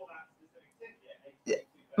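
A woman's faint mouth sounds in a pause between sentences, then one short, sharp intake of breath about one and a half seconds in.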